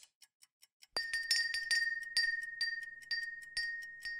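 Doorbell rung over and over: a high ringing note struck in quick succession, about four times a second, starting about a second in, the sign of an impatient caller.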